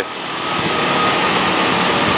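Small motor scooter engines running, heard as a steady rush of noise that grows slightly louder, with a faint steady whine.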